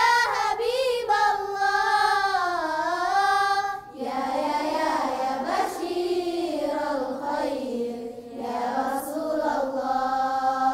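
A group of young girls singing an Islamic nasheed together in unison. The melody breaks briefly about four seconds in and carries on in a lower register.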